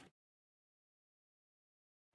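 Complete silence: the sound cuts off abruptly at the very start and nothing at all is heard.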